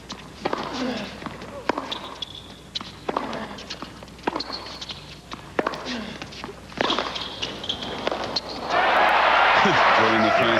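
Tennis rally on a hard court: rackets strike the ball about once every second or so, with short player grunts and shoe squeaks between strokes. The crowd breaks into loud cheering and applause near the end as the point is won.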